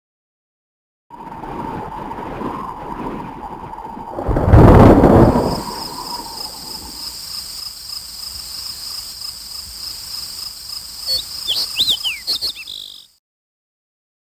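Intro sound effects over a title card: a faint steady tone, then a loud low whoosh about four seconds in, followed by a steady high ringing with a few quick chirp-like glides near the end. It cuts off suddenly about a second before the end.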